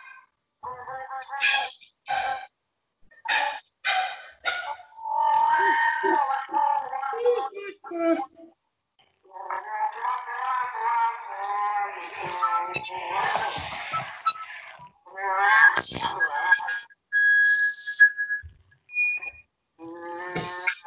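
Sopranino flute (piccolo) heard over a video call. It plays a run of short sharp attacks first, then longer wavering pitched phrases, and clear high held notes near the end.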